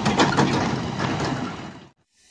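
A pickup truck's engine running with crunching on a gravel road, fading out near the end.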